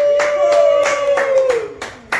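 Hand clapping in a quick, steady rhythm, under one long held sung note that fades out near the end.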